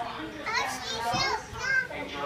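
Children's voices: high-pitched shouts and calls, the loudest near the end.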